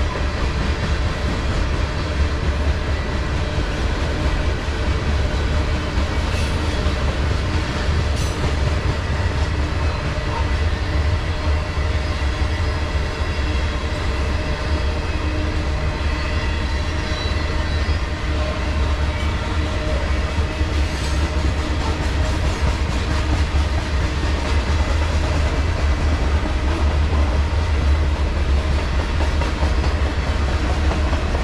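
Covered hopper cars of a CSX freight train rolling past: a steady heavy rumble of steel wheels on rail, with a few sharp clicks.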